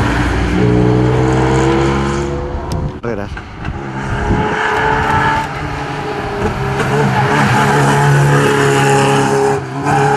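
Rally car engines revving hard and rising in pitch as the cars accelerate out of tight bends and pass by. About three seconds in, the sound breaks off and a small first-generation Fiat Panda rally car is heard, its engine climbing through the revs as it comes through the corner and pulls away.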